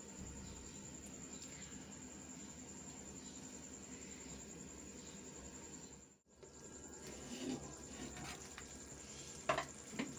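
A covered karahi of tori sabzi simmering in its own water on a gas burner: a faint, steady bubbling hiss with a thin high-pitched whine above it. The sound drops out briefly about six seconds in, and there is a sharp click near the end.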